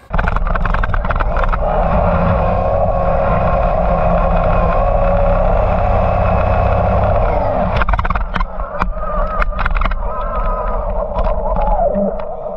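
Traxxas XRT RC monster truck heard from its onboard GoPro while driving over grass: a steady motor and drivetrain whine over a dense low rumble. From about eight seconds in the whine wavers up and down as the speed changes, with several sharp knocks.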